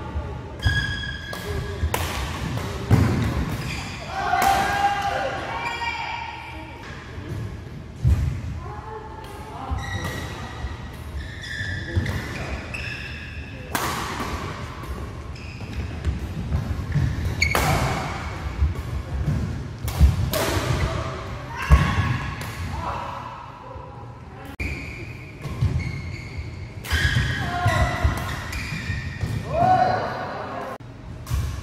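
Badminton play in a large hall: rackets striking the shuttlecock with sharp, irregular hits and shoes squeaking on the court floor, with players' voices, all echoing in the hall.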